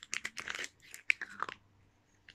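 Kinder Surprise chocolate egg being unwrapped and broken open: a quick run of sharp foil crinkles and chocolate cracks for about a second and a half, then a brief pause.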